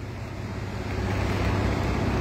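A passing road vehicle on a wet street: a steady hiss of tyres on wet asphalt over a low engine rumble, growing louder through the first second and then holding.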